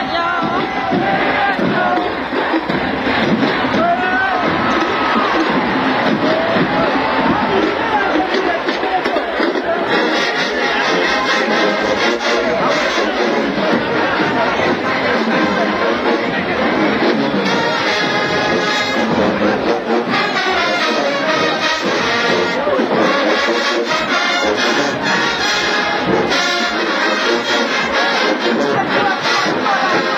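Marching band brass and drums playing amid a cheering stadium crowd. Crowd shouting is most prominent at first, and the band's rhythmic playing comes through more strongly from about ten seconds in.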